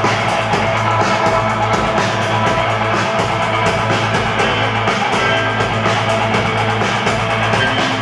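A live rock band playing: electric guitars, a drum kit and keyboards over a steady low bass note, with regular drum hits.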